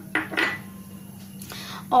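A glass bowl set down on a stone counter: two brief clinks in the first half-second, the second ringing briefly, then a low steady hum.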